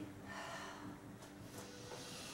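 A woman breathing softly, two breaths one after the other, while standing still after a yoga forward fold.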